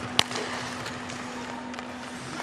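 Ice hockey arena ambience with a steady low hum, broken about a quarter of a second in by one sharp crack of a stick striking the puck.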